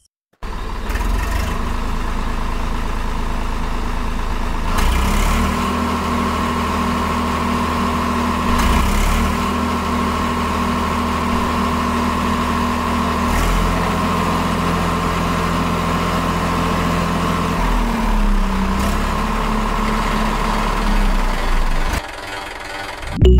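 Small electric DC motors of a homemade model tractor and its rice-transplanting mechanism running, a steady whir that starts abruptly, with a higher whine joining about five seconds in and the pitch shifting a little now and then.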